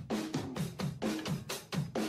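Music: a drum-kit beat of kick and snare hits, about four a second, with a short falling pitched thud on the hits.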